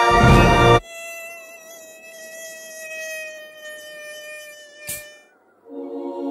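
A mosquito whining: a steady, thin buzzing tone that wavers slightly for about four seconds. It follows a loud sound that cuts off suddenly just under a second in, and ends with a single sharp click about five seconds in.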